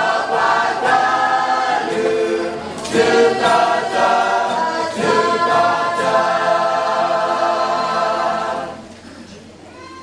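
A choir singing, with long held chords that change every second or so; the singing drops sharply in level a little before the end.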